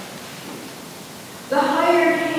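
A pause in a reading over the church sound system: steady room hiss for about a second and a half, then the reader's voice comes back in abruptly near the end.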